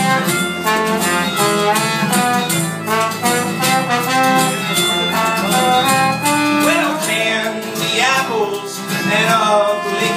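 Live acoustic band playing an instrumental passage: an acoustic guitar strummed over an upright bass, with a sustained, held-note melody line on top that starts to slide in pitch about seven seconds in.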